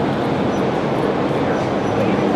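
Loud, steady roar of city street noise.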